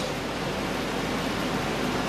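Steady, even hiss of background noise, with no speech.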